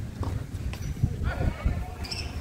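Tennis ball struck by racquets in a doubles rally: a few sharp hits, with a short shout from a player about halfway through, over a steady low rumble.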